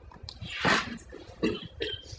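A person coughing once, about half a second in, followed by a couple of short, softer sounds.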